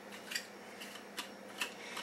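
Small, faint clicks and taps of a hummingbird feeder's parts being handled as its base is screwed onto the glass nectar reservoir, about four clicks over two seconds.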